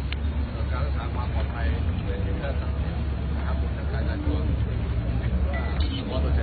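A man speaking into reporters' microphones over a steady low rumble.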